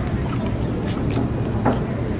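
Steady low rumbling background noise, with a sharp click near the end.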